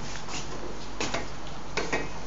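A few light clicks and knocks of kitchen pots and utensils being handled, over a steady background hiss.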